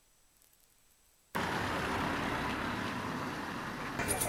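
Near silence, then just over a second in, a steady background noise of road vehicles starts abruptly and runs on evenly.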